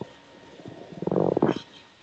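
A person's voice over the video call: one short, muffled vocal sound about a second in, distorted by the call audio.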